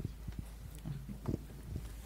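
Handling noise from a handheld microphone as it is passed from hand to hand: a series of soft, irregular low knocks and rubs.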